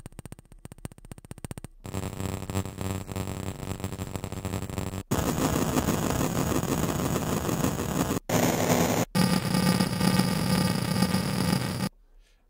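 Ableton Drift software synth set up as a 'noise machine': its LFO and cycling envelope run at audio rate on extreme settings, modulating filter, pitch, oscillator shape and volume, so each held note gives a harsh, glitchy noise texture. About five notes in turn, each cutting off sharply before the next with a different texture, the first a rapid stutter.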